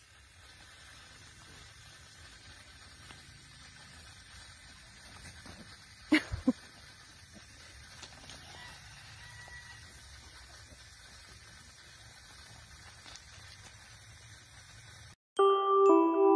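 Faint, steady outdoor background noise, broken about six seconds in by a short, loud double sound. Near the end, a mallet-percussion tune starts suddenly.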